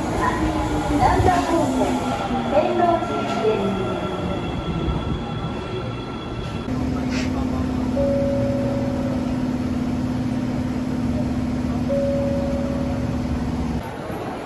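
An Osaka Metro Midosuji Line subway train braking along the platform, its traction motors whining down in pitch as it slows. After a cut, the steady hum of the train is heard from inside the carriage, with a short higher tone sounding twice.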